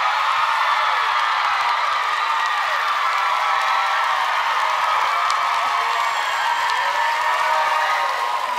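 A studio audience cheering, screaming and clapping, a dense crowd of voices that holds steady and loud throughout.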